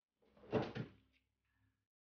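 A wooden door knocked or bumped as it is moved: two quick knocks about a quarter of a second apart, half a second in.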